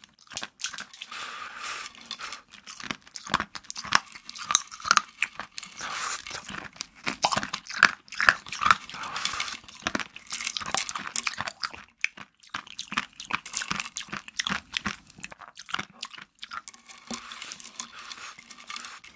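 Close-up crunching and chewing of hard candy sprinkles and small sugar candy balls, a dense, irregular run of sharp crackles and crunches.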